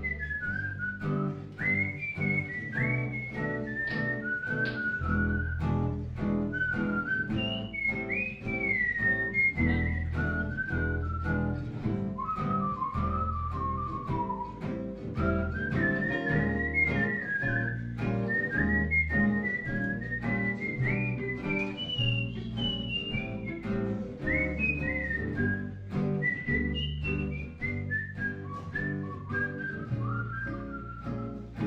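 A melody whistled over gypsy-jazz accompaniment: acoustic guitars strumming the rhythm in even strokes, with an upright bass playing sustained low notes. The whistled line slides up and down between notes.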